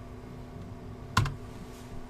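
A single computer-keyboard keystroke about a second in, the Enter key confirming a typed value, over a faint steady hum.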